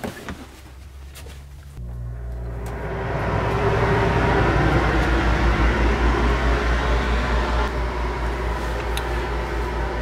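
RV air conditioner starting up. A low hum comes on about two seconds in, then a rush of air from its fan builds over the next second or so and settles into a steady run.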